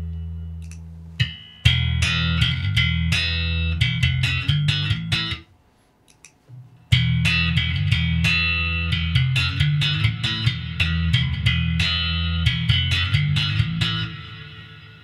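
Electric bass played slap-style through a TC Electronic Hall of Fame Mini reverb pedal: two phrases of sharply slapped and popped notes, separated by a pause of about a second and a half.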